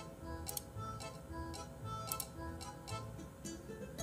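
Quiet background music: a soft bass line under short melody notes, with a ticking, clock-like percussion click every second or so.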